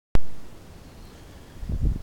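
A sharp click as the recording begins, fading within half a second, then a low hiss and, in the last half second, low rumbling on the microphone.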